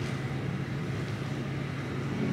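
Room tone with a steady low hum.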